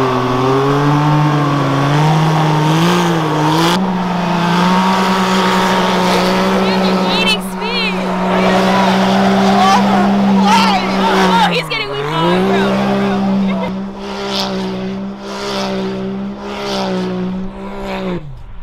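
Two Can-Am side-by-side UTVs tethered by a tow strap, both in high range, spinning a donut together on snow-covered ice. Their engines hold a steady high-revving note, which dips briefly about twelve seconds in and then picks back up.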